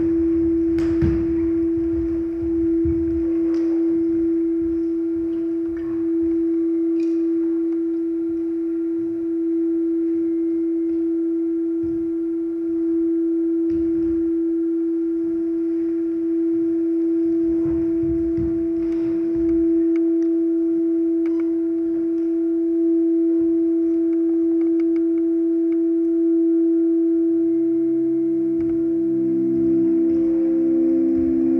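A sustained pure tone held steady as a drone in the dance piece's soundtrack, with a fainter higher tone joining about halfway through and further low tones coming in near the end. Soft low thuds and faint clicks sound under it now and then.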